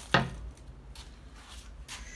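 A single sharp wooden knock just after the start, with a brief ring, as the bağlama's wooden body is handled and set down against a chair; a low steady hum runs underneath.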